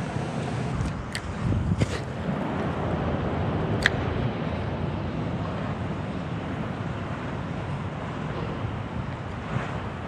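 Steady wind rumble on the microphone outdoors by the water, with a few small clicks in the first two seconds and one sharp click about four seconds in.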